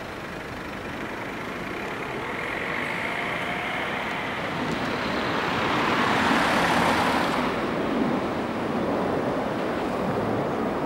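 Street traffic: a motor vehicle passing, its noise swelling to a peak about six to seven seconds in and then fading, over a steady road hum.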